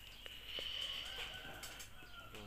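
A rooster crowing once, one long drawn-out call, fairly faint, with a couple of small clicks.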